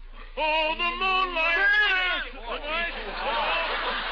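Men's voices in an old radio recording, speaking or calling out for about two seconds, then music coming in about three seconds in and building toward the end.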